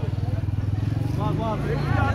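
A small motorcycle engine idling close by, a steady low pulsing, with a man's voice over it from about a second in.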